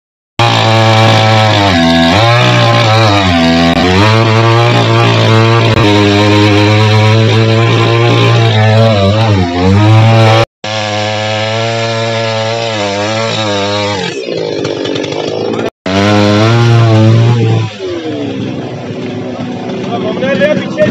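Chainsaw engine running hard, its pitch wavering up and down, as in cutting wood. It cuts out abruptly twice, near the middle and a few seconds later.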